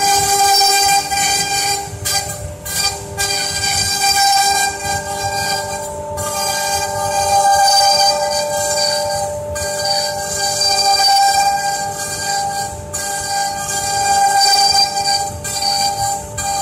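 Two-spindle CNC router running, both spindles carving a relief into a wooden board: a steady whine held at several pitches over cutting noise that rises and dips as the heads move.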